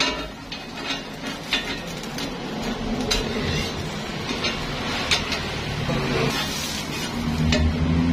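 Block of steamed bread toasting on a flat, greased steel griddle: a steady sizzle, with metal spatulas scraping and tapping against the plate many times. A low hum comes in near the end.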